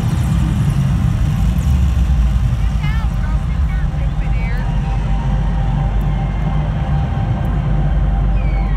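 Live arena concert sound recorded on a phone in the stands: a loud, steady low rumble from the PA system, with wavering whoops from the crowd about three and four seconds in.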